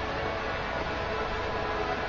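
Steady background hiss and hum, with faint steady tones under it and no distinct events.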